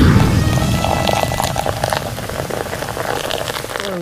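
Jet airliner takeoff noise: a dense, rumbling engine noise, loudest at the start and easing slowly, with a faint steady high whine above it.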